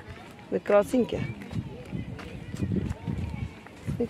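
A voice speaking briefly about half a second in, then low, irregular thumps and rustle from walking outdoors with the phone.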